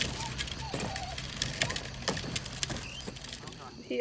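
Faint voices outdoors with scattered light clicks and taps, over a steady low background hum.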